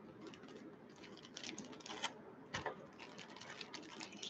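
Clear plastic bags and foil-wrapped card packs being handled, making faint irregular crinkling and clicking, with a couple of sharper crackles about two and two and a half seconds in.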